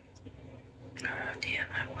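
A woman's soft whispered speech begins about a second in, quiet and under her breath, over a faint steady room hum.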